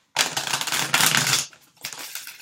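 A deck of tarot cards being shuffled by hand: a rapid run of card flicks lasting about a second and a half, then a brief softer patter near the end.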